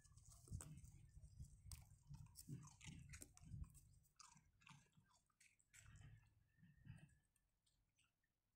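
Faint chewing and crunching of dogs eating food off the ground: a string of short crunches and clicks that thins out and stops about seven seconds in.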